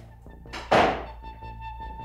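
A wooden door shutting with a single loud thunk well under a second in, over background film music.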